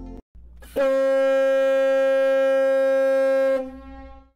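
Ship's horn sounding one long, loud, steady blast of about three seconds, then fading away.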